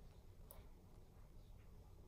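Near silence: room tone with a faint low hum and one soft tick about half a second in.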